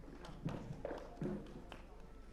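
Indistinct voices talking, with a few sharp taps of shoes crossing a stage floor.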